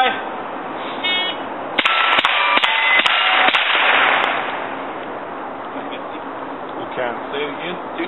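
A shot timer beeps, then about six quick rifle shots follow over roughly two seconds, each followed by the ring of a struck steel target plate. The ringing fades out shortly after the last shot.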